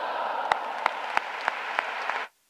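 Audience applauding: a steady patter of many hands, with a nearer pair of hands clapping sharply close to the microphone, about three claps a second.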